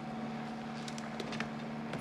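Boat engine running steadily: a low, even hum with a few faint ticks in the middle.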